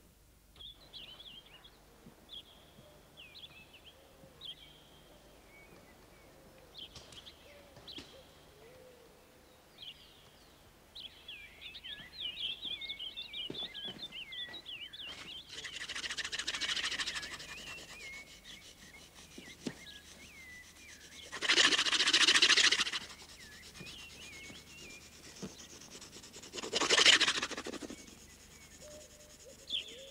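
Small birds chirping in quick, many-voiced calls, with three loud bursts of rushing noise, each a second or two long, in the second half.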